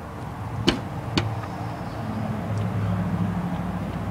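Two sharp knocks about half a second apart, near the start, over steady outdoor background noise. A low hum grows a little louder in the second half.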